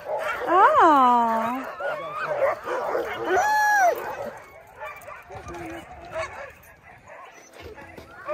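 A pack of husky sled dogs barking, yipping and howling in excitement. Two loud arching howls stand out, about a second in and at about three and a half seconds, and the din thins out in the second half.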